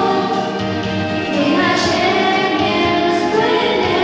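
A girl singing a Polish Christmas carol into a microphone over musical accompaniment.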